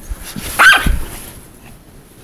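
A Pomeranian barks once, a single high-pitched bark about two-thirds of a second in.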